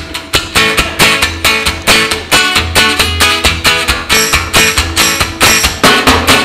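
Acoustic guitar strummed in a fast, even rhythm with drums keeping time, a live band playing through a PA.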